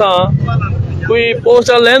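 A man speaking, with a low rumble of street background showing through in a short pause about half a second in.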